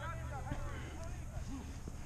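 Voices of players calling out across an open field, strongest in the first second and fainter after, over a steady low rumble on the microphone.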